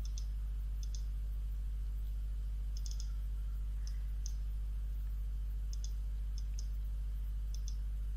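Computer mouse clicking faintly about ten times at irregular intervals, some clicks in quick pairs, over a steady low electrical hum.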